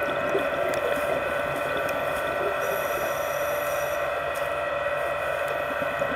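Steady background ambience of an aquarium viewing hall: a continuous mechanical hum with several held tones over an even hiss.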